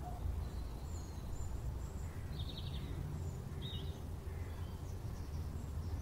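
Outdoor ambience: a steady low rumble with a few faint trilled bird chirps, two of them about two and a half and four seconds in.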